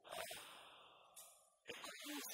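Short fragments of a man's voice between pauses: one brief sound just after the start and another near the end, with near silence in between.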